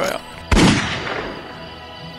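A single gunshot sound effect: one sharp crack about half a second in that rings away over about a second, over background music.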